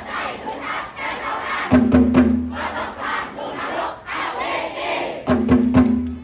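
Many voices shouting together like battle cries over performance music, with heavy drum strikes about two seconds in and again near the end.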